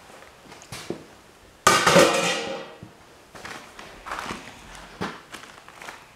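A dished sheet-metal plate being set down, with a loud clatter about two seconds in that fades over about a second, then a few light knocks and handling noises.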